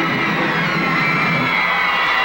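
Rock-and-roll band playing out the end of the song, with an audience screaming and cheering over it; the sound is loud and steady throughout.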